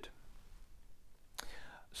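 Quiet room tone in a pause of a man's talk, broken about a second and a half in by a mouth click and a short breath in.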